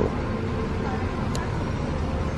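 Steady low outdoor background rumble with no clear single event, and one faint tick about a second and a half in.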